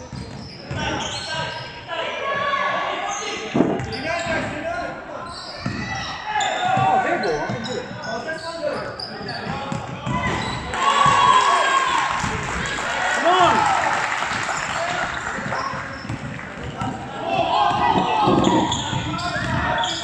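Basketball bouncing on a wooden gym floor during play, with repeated knocks and voices calling out, echoing in a large hall.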